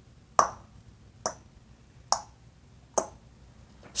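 A man clicking his tongue in a steady rhythm, five sharp clicks a little under a second apart, imitating the tick-tock of a swinging grandfather-clock pendulum.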